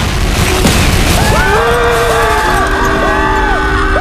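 A loud, sustained explosion rumble of a nuclear blast. Music of arching, gliding tones comes in over it about a second and a half in.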